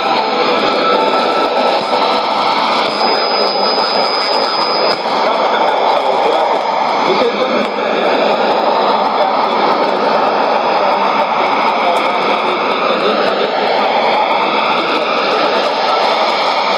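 Shortwave AM broadcast on 17850 kHz heard through a Sony ICF-2001D receiver's speaker, buried under steady white-noise digital jamming that sounds as a dense, even hiss. A thin high whistle runs for about two seconds near the start.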